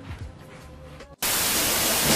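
A glitch-transition sound effect: loud, hissing TV-style static cuts in abruptly a little over a second in, after a brief quieter moment.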